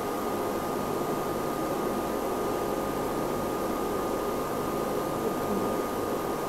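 Steady hiss with a thin, constant high tone running through it; no distinct event stands out.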